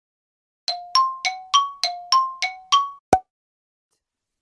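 Channel logo intro sound effect: eight quick bell-like dings, about three a second, alternating between a lower and a higher pitch, each ringing briefly before dying away. It ends in a single short, sharp hit with a deep thud.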